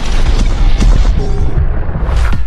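Logo-intro sound effect: a loud, deep rumbling boom with whooshes and a few sharp hits laid over it.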